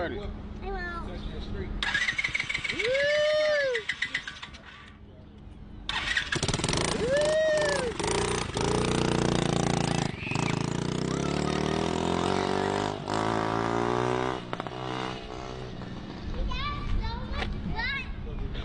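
A small pit bike's engine starts and revs, dips for a moment, then picks up again as the bike rides off, its pitch climbing over and over as it accelerates and easing off near the end.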